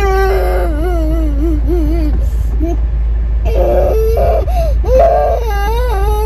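A young child crying and wailing in a tantrum: long, wavering, high-pitched wails, stopping for about a second and a half midway and then starting again. Inside a car, with a steady low hum underneath.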